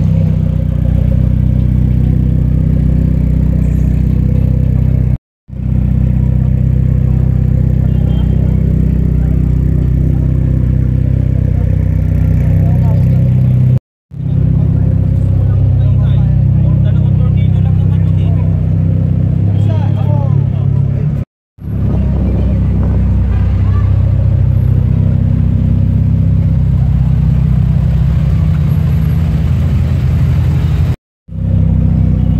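A car engine idling steadily close by, with crowd voices in the background. The sound breaks off for a moment three times where the footage is cut.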